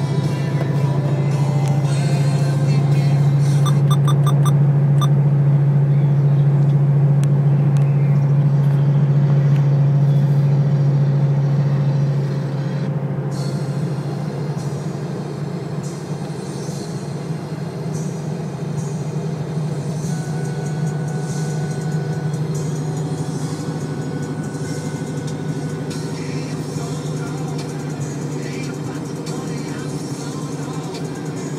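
Ford Mustang's engine and exhaust droning steadily from inside the cabin while driving. It is louder for the first dozen seconds, then settles a little quieter.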